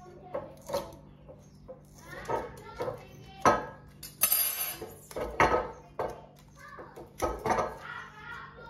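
Foil capsule on a wine bottle being cut and torn off with the knife of a waiter's-friend corkscrew, then the corkscrew handled on the bottle neck: irregular scrapes, clicks and crinkles, the loudest a crackling rustle about four seconds in.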